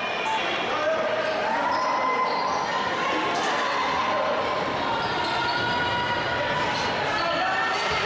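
Echoing gymnasium sound during a basketball game: players' and spectators' voices calling out, with a few sharp thuds of a basketball hitting the hardwood floor.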